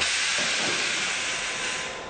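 Hiss of compressed air being released from a London Underground Circle Line train, louder at first and cutting off shortly before the end.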